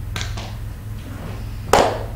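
A steady low hum under a pause, broken about three-quarters of the way through by a single sharp tap.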